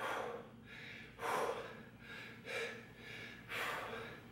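A man's hard breathing during dumbbell overhead presses: four short, forceful breaths a little over a second apart, the breathing of exertion with each repetition.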